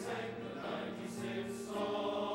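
Men's choir singing sustained chords, with two short hissed 's' consonants in the second half.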